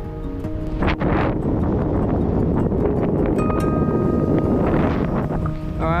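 Wind rushing over the microphone of a paraglider in flight, a dense rumbling rush that swells about a second in and eases near the end. Fingerstyle acoustic guitar music plays underneath.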